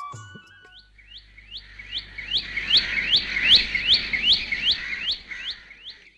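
A bird calling: a rapid, even series of short chirps, each one rising in pitch, about three a second. They build up to a peak in the middle and fade toward the end.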